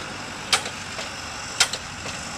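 Steady engine noise from nearby excavation and drilling equipment, with two sharp clicks about a second apart.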